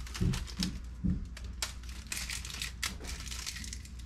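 Plastic laptop keyboard parts, the key frame and its thin mylar membrane sheets, crinkling and crackling as they are handled, in irregular clicks.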